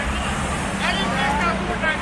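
Steady low rumble of road traffic and idling engines, with people talking over it.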